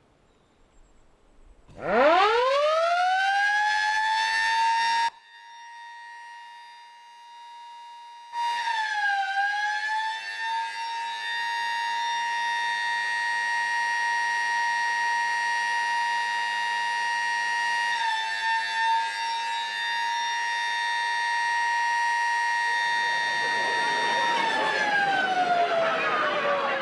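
A siren winding up to a steady wail, cut off abruptly after a few seconds. After a quieter gap it sounds again, holding one steady pitch for about fifteen seconds before it starts to wind down near the end, as a rush of noise rises under it.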